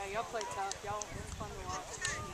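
Indistinct overlapping voices of several people talking and calling around a youth soccer field, with no clear words and a few faint clicks in the first second.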